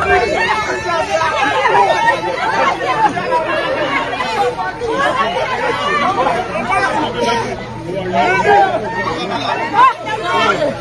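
A close-packed crowd of many people talking and calling out over one another in a dense, unbroken babble of voices.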